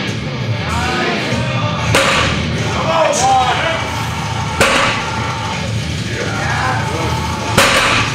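Loud rock music with three heavy thuds, roughly every two and a half to three seconds, as the plate-loaded trap bar touches down on the floor between deadlift reps.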